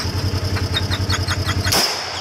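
Side-by-side utility vehicle's engine idling with an even, fast low pulsing. A brief rushing noise comes near the end, and the pulsing drops away with it.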